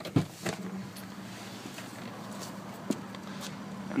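A couple of sharp clicks, then a steady low hum inside the 1999 Toyota 4Runner's cabin from about half a second in, with a few faint ticks.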